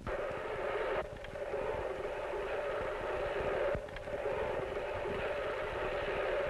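Push reel lawn mower rolling over grass, its spinning blade cylinder cutting with a steady whirr that dips briefly about a second in and again near four seconds.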